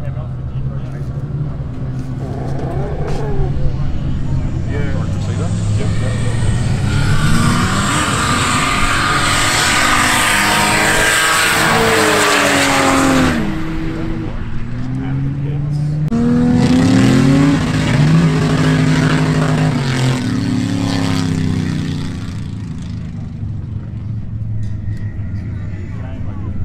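Two race cars, a Ford Falcon sedan and a Mitsubishi Lancer Evolution, accelerating flat out from a rolling start, their engines revving hard up through the gears and swelling to a loud roar that cuts off suddenly about 13 seconds in. About 16 seconds in, a second stretch of engines revs up through gear changes and then fades away.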